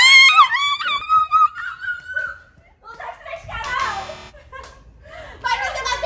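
A girl's high-pitched excited squeal, its pitch sliding up and down for about two seconds. After a short lull, a brief buzzy vocal burst follows, and excited voices pick up again near the end.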